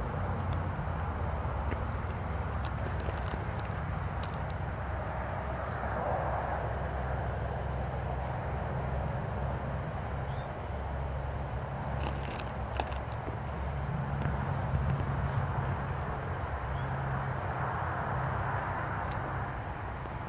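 Steady low outdoor rumble with background noise and no clear event, and a few faint clicks about twelve seconds in.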